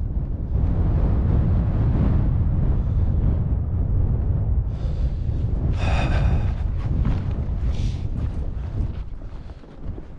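Strong wind buffeting the microphone, a steady low rumble. About five seconds in, a brief higher rustling sound rides over it for a second or so.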